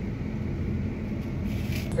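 Forage harvester running, heard inside the cab as a steady low engine drone.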